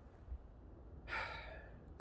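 A man drawing a quick audible breath through the mouth about a second in, a short airy intake lasting under a second, over a faint low background rumble.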